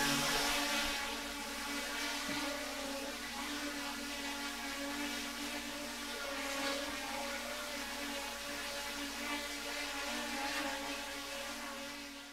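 Quadcopter hovering in place, its propellers giving a steady, even hum.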